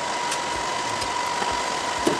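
Steady whir of IBM server fans running at full speed ('panic mode') while the servers load, with a steady whine in it and a couple of faint clicks.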